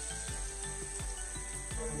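Shrimp sizzling in hot grapeseed oil in a frying pan, a steady hiss, under background music.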